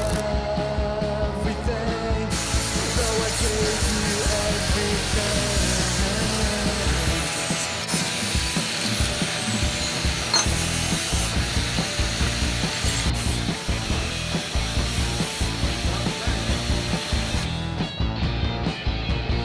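A welding arc crackles for about the first two seconds. Then a handheld angle grinder runs on the steel for most of the rest, a dense hissing whine whose pitch drops a few times, stopping shortly before the end. A rock song plays underneath throughout.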